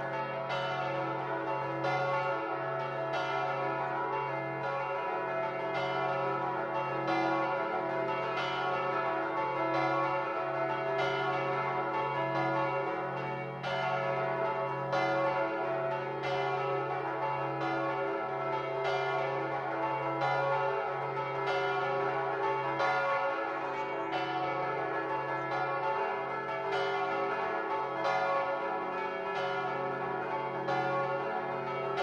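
Church bells ringing continuously, with a new stroke roughly every half second and the tones overlapping and ringing on.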